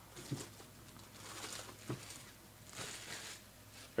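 Clear plastic shrink wrap being peeled off a cardboard box: faint crinkling rustles in a few short spells, with a couple of soft clicks.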